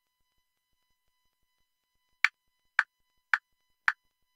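Software-generated metronome click track (Audacity's Rhythm Track) playing back as a recording guide. It is silent for about two seconds, then gives four short, evenly spaced clicks about half a second apart.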